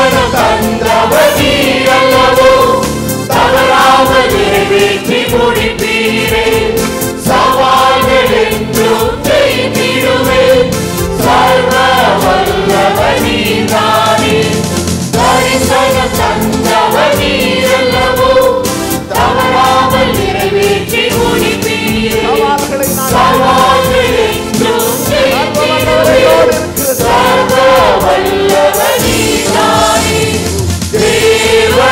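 A congregation singing a praise and worship song together with musical accompaniment and a steady beat, in repeating phrases of a few seconds each.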